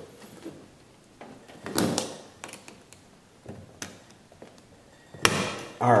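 Steel roller chain of a go-kart being handled: scattered metallic clicks and rattles of the links as fingers pry the spring clip off the master link to unlink the chain, louder near the end.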